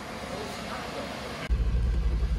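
Turbocharged Mazda Miata engine running at low revs, heard from inside the cabin. It is a loud, low rumble that comes in abruptly about a second and a half in, after a quieter stretch of faint background noise.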